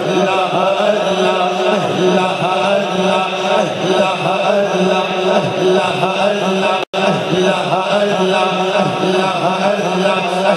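A man chanting a naat, devotional Urdu verse, into a microphone through a PA. The sound cuts out completely for a moment about seven seconds in.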